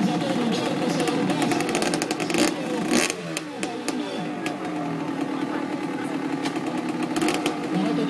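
Off-road motorcycle engine revving up and down in blips as the bike is worked over a tyre obstacle, with a loud burst of clattering about two and a half to three seconds in. Voices from onlookers are mixed in.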